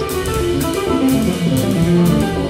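Live jazz band playing: a guitar line moving over bass and drums, with cymbal strokes at an even pace.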